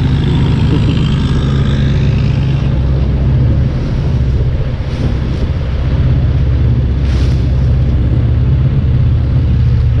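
Longtail boat engine running steadily under way, a loud low drone heard from on board, with water rushing along the hull.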